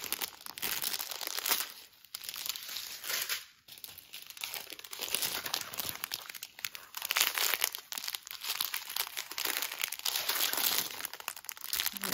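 Small plastic bags of diamond painting drills crinkling as they are handled and shuffled, in irregular crisp crackles with brief lulls about two and three and a half seconds in.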